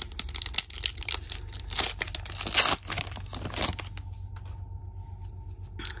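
A Pokémon booster pack's foil wrapper torn open by hand: a quick run of tearing and crinkling over the first four seconds, then it goes quiet.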